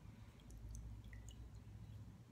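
Near silence: a low steady hum, with a few faint small wet clicks between about half a second and one and a half seconds in.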